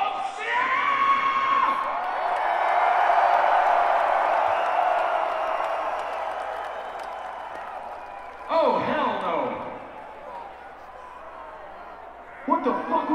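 Large arena crowd cheering and screaming, swelling quickly and loudest a few seconds in, then dying down. A single shouted voice breaks in about eight and a half seconds in, and the crowd noise is low near the end.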